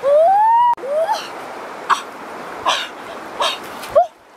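A woman's loud rising exclamation of surprise, a drawn-out "ooh" that cuts off sharply, followed by a shorter rising "oh". Three short, sharp noises follow, about a second apart.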